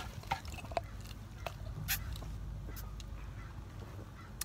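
Short, faint slurps through a straw from a slushy drink, several scattered sips, over a steady low rumble.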